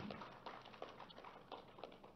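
Faint, scattered applause: a seated audience clapping unevenly, with many separate claps rather than a dense roar, dying away at the end.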